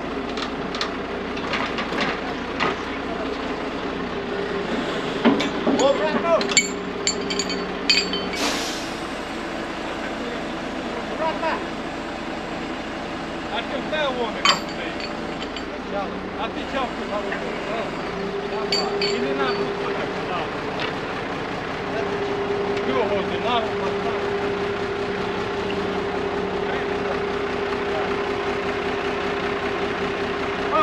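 Truck engine running steadily to drive a truck-mounted loader crane's hydraulics, a steady hum that grows louder about two-thirds of the way through as the crane is worked. Metal clinks from the hook and rigging in the first third, and a short sharp hiss about eight seconds in.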